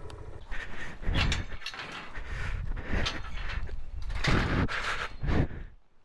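Metal field gate being handled and swung open: a string of irregular clanks, rattles and scrapes, roughly one a second.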